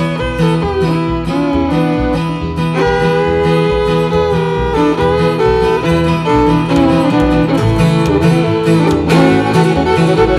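Instrumental old-time fiddle tune: a bowed fiddle carries the melody over strummed acoustic guitar and a plucked upright bass keeping a steady beat.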